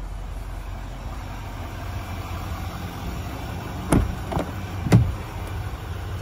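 Doors of a 2024 GMC Sierra 3500 pickup cab: two sharp clunks about a second apart, the second one loudest, with a smaller click between them, as the doors are shut and opened. A steady low rumble runs underneath.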